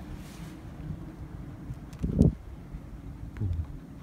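Wind buffeting the microphone: a low rumble with a louder gust about two seconds in and a smaller one shortly before the end, with a few faint clicks.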